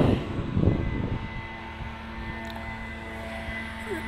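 A steady low mechanical drone with a few faint held tones, like a motor or engine running continuously.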